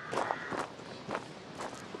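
Footsteps of a man walking, several separate steps spread through the two seconds.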